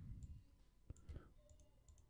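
Faint computer mouse clicks: a sharp click about a second in, followed by a couple of weaker ones.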